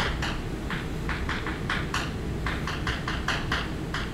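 Chalk tapping and scratching on a blackboard as words and a structure are written: a quick, irregular run of short strokes, over a steady low room hum.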